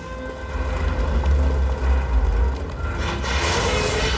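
A truck's engine rumbling in city traffic, with a loud rushing whoosh as it passes about three seconds in, over background music.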